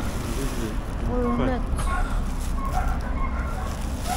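Black plastic bag rustling as hands move plastic-wrapped items inside it, with faint voices and a steady low rumble behind.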